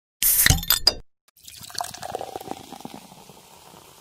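A short clink of glass with a brief ring, then after a moment's gap a drink pouring into a glass, fading out.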